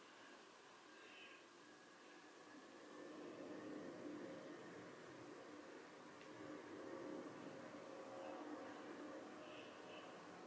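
Near silence: quiet room tone with faint rustling of fingers pushing natural hair up from the back of the head.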